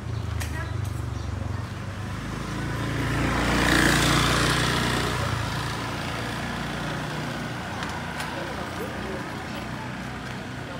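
A motorbike passes close by, its engine growing to its loudest about four seconds in and then fading away, over a steady low engine hum at the start.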